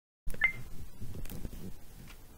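A short high electronic beep about half a second in, followed by soft low rustling and knocks of a camera or microphone being handled.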